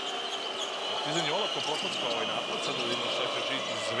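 Steady noise of a packed arena crowd at a basketball game, with a basketball being dribbled on the hardwood court.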